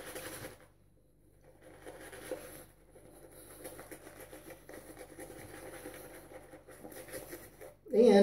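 Vintage Wade and Butcher wedge straight razor scraping through lathered stubble on the cheek: a faint, crackly scratching in a run of strokes, starting about a second and a half in.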